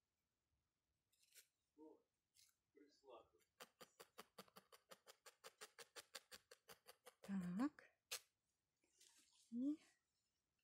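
A felting needle stabbed repeatedly into wool held on a foam pad, an even run of soft clicks at about seven a second for a few seconds, firming down the loose surface fibres. Two short wordless voice sounds from the woman follow.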